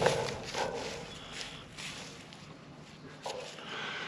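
Dry leaf and wood-chip mulch crunching and rustling in a few short scuffs as a fertilizer spike is handled and pressed into the ground by hand.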